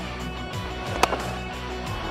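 Background music with steady held tones, and a single sharp crack about a second in: a cricket bat striking the ball.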